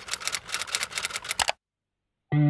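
Typing sound effect: a quick run of sharp key clicks, roughly eight a second, that stops abruptly about one and a half seconds in.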